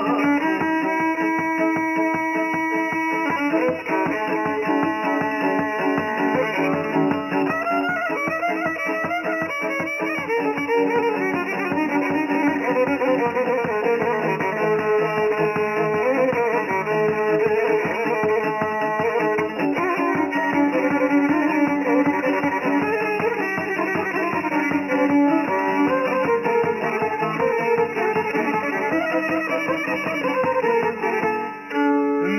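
Traditional Serbian folk music played instrumentally: a violin carries the melody over fast, steadily plucked long-necked lute strings.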